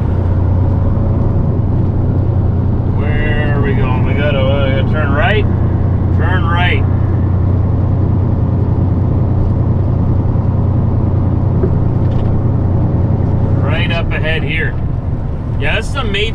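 Truck's diesel engine running under way, heard inside the cab as a loud, steady, deep drone that eases off about two seconds before the end.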